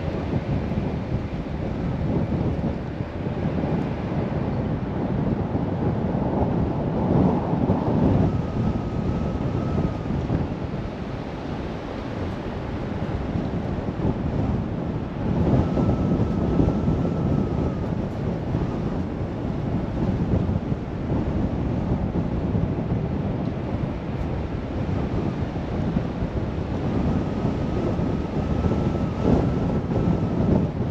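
Wind rumbling on the microphone of a camera mounted on a moving car, mixed with road noise, swelling and easing every few seconds.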